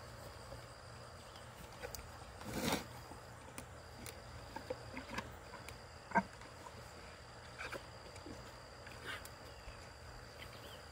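Yearling longhorn giving one short, breathy noise about two and a half seconds in as a bolus gun pushes a magnet down its throat. Otherwise quiet, with a few faint clicks and a faint steady high tone.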